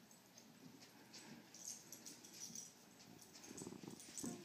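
Near silence, with a few faint clicks and soft scuffs from a large dog moving around a cat on a carpet.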